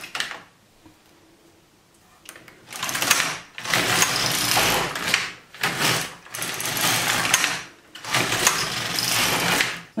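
Brother LK150 mid-gauge knitting machine carriage pushed across the needle bed to knit rows of waste yarn: four passes, each a second or two long with short breaks between, starting about two seconds in.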